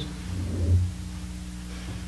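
A steady low electrical hum, with a brief low, muffled rumble about half a second to a second in.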